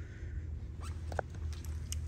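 Indoor room tone: a low steady hum with a few brief, faint high squeaks, about a second in and again near the end.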